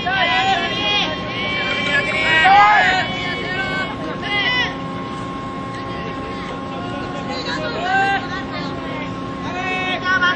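Young players' high-pitched shouted calls and chants from the field and bench, in bursts of several voices, loudest about two and a half seconds in, over a steady low hum.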